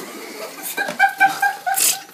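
A person laughing in a quick run of short "ha-ha" bursts about a second in, with a brief hissing burst near the end.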